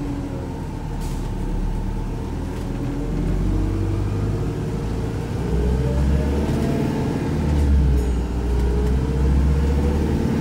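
Inside a Volvo B5LH hybrid double-decker bus on the move: a steady drivetrain rumble with a whine that rises and falls in pitch as the bus changes speed. The deep rumble gets louder about halfway through.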